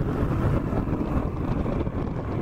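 Powered paraglider trike's engine and propeller running steadily in flight, with wind noise on the microphone.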